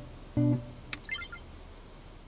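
Soft background score of plucked guitar: one sustained note about half a second in, followed about a second in by a brief bright twinkling chime that fades away.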